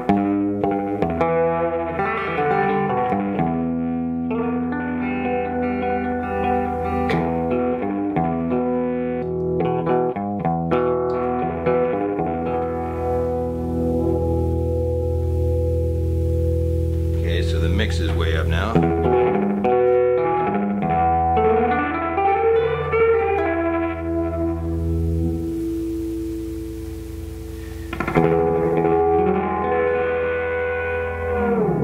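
Electric guitar played through a circa-1987 DOD FX-90 analog delay pedal (MN3005 bucket-brigade chip) set to a short delay, each note followed by its darker echo. About halfway through, the echoes bend up and down in pitch as the delay knob is turned while notes ring.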